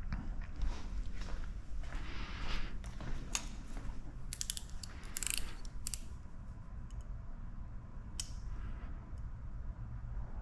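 Close handling noises: a scatter of light clicks and scrapes, densest about four to six seconds in, as a chrome lettering badge is handled and a blade picks at the 3M double-sided tape backing on its back.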